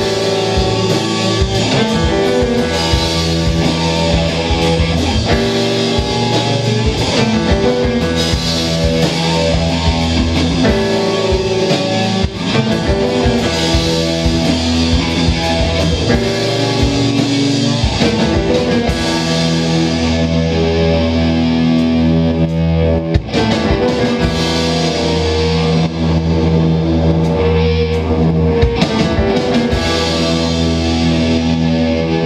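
A rock band playing live and loud: electric guitar over a drum kit, in a steady full-band passage of the song.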